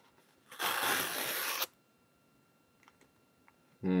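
Pull-tab tear strip being ripped along a paper cushion mailer: one continuous tearing sound lasting about a second.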